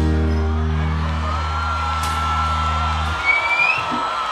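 A live maskandi band's closing chord held on bass and keyboard, cutting off abruptly about three seconds in. Above it a long high steady whistle runs through the second half, with a short rising whoop near the end.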